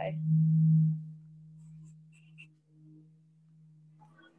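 Steady low machine hum from neighbouring woodworking machinery, heard through the wall. It swells loudest in the first second, then settles to a fainter, even drone.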